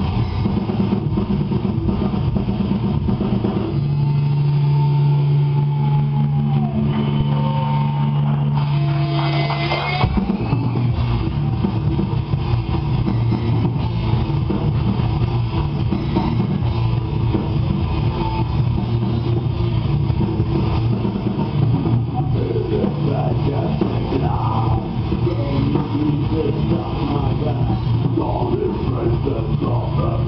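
A heavy metal band playing loud live with distorted electric guitars and a drum kit. About four seconds in the bottom end drops away under long held notes, one bending in pitch, and the full band crashes back in about ten seconds in.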